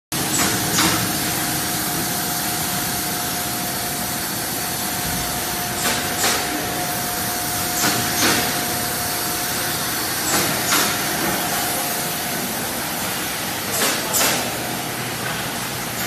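Multilane sachet packaging machine running, a steady mechanical hum with a held tone, broken every few seconds by a quick double clack-and-hiss stroke.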